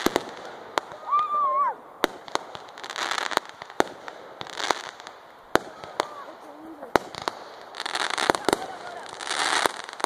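Aerial fireworks going off: a string of sharp bangs with several bursts of crackling, heaviest near the end. A short high-pitched voice call sounds over them about a second in.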